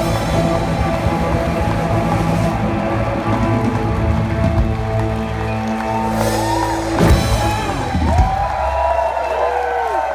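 Live rock band of electric guitars, bass and drums playing the closing bars of a song, ending on two heavy hits about seven and eight seconds in. After that a low note rings on while the audience cheers and whoops.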